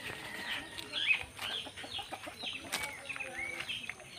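Birds chirping in short, repeated calls, with a chicken clucking among them.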